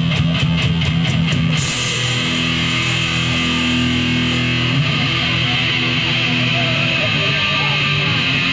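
A rock band playing live at full volume: electric guitars and bass hold chords, with quick, evenly spaced drum hits for the first second and a half, then a steady crash of cymbals over the rest.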